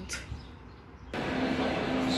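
Faint low street rumble, then about a second in a sudden cut to the louder, steady din of a large railway station concourse with a constant low hum.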